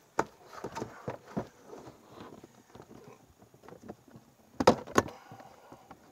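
Plastic panels of a YakAttack BlackPak Pro crate knocking and clicking against each other as the last, tricky side panel is worked into place, with two sharp snaps a little before the end.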